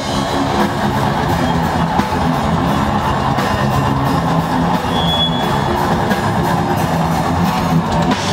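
A metal band playing live: electric guitar and bass riffing over a drum kit, loud and continuous.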